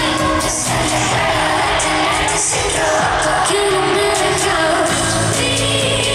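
Female pop singer singing live into a handheld microphone over an amplified pop band track with a steady beat, as heard in a concert arena.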